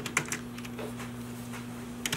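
Typing on a computer keyboard: scattered key clicks, busiest near the start, over a steady low hum.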